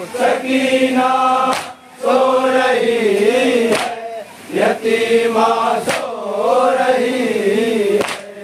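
Men's group reciting an Urdu noha (Shia lament) in unison, in long, wavering held notes. A sharp slap-like beat comes about every two seconds, typical of matam chest-beating.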